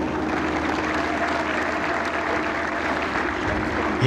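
Large crowd applauding steadily: a dense, even clatter of many hands clapping, with a faint steady hum beneath it.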